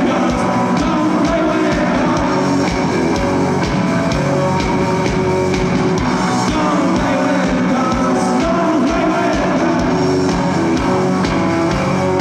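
Live psychedelic indie rock band playing loud: distorted electric guitars, bass and drums over a steady kick-drum beat.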